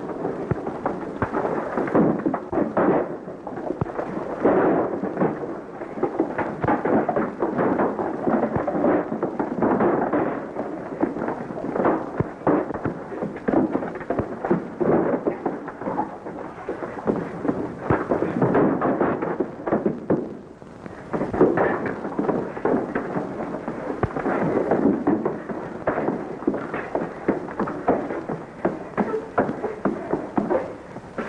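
Fistfight sound effects: a dense, continuous run of punches, thuds and scuffling as men brawl, with a short lull about twenty seconds in.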